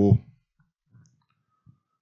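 A man's voice holding a long drawn-out "o" that ends just after the start, followed by quiet with a few faint clicks.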